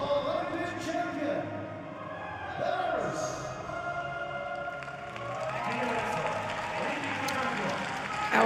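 A voice speaking with music playing underneath.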